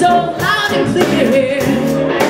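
Live blues band: a woman singing lead into a microphone, her voice bending and breaking over the band's guitar and drums.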